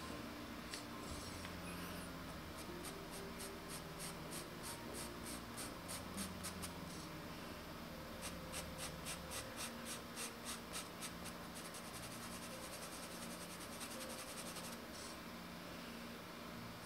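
Pastel pencil scratching faintly on paper in even back-and-forth strokes, about three a second, laying in a light brown base colour. Near the end it changes to lighter, quicker hatching.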